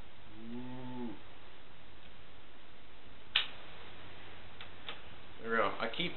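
A brief hummed "mm" from a man's voice, then a single sharp metallic clack about three and a half seconds in: a Zippo lighter's hinged lid snapping shut over its flame, followed by two faint ticks.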